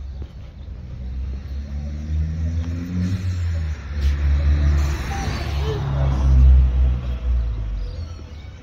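Motor vehicle engine passing close by on the street, building to its loudest about six and a half seconds in, then fading.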